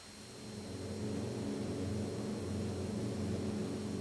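Propeller engines of bombers in flight, a steady low drone that fades in over about the first second and then holds level.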